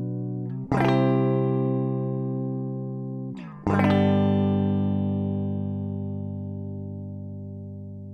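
Electric guitar on its stock humbuckers with both pickups selected, strumming chords. A chord is struck about a second in and another a little before four seconds, each left to ring and slowly fade.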